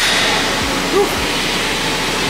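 Steady, loud rushing background noise with no pitch or rhythm, and a short "Woo!" exclamation from a man about a second in.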